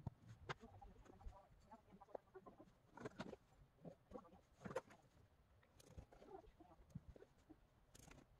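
Near silence, with faint scattered taps and scrapes of plastic cookie cutters and a knife working salt dough on a mat.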